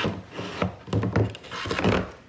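Plywood board scraping and bumping against a plastic planter trough as it is slid into it, in a few irregular knocks and rubs, loudest near the end.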